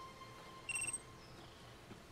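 A handheld satellite phone gives one short, high electronic beep about two-thirds of a second in, the signal that its channel has opened.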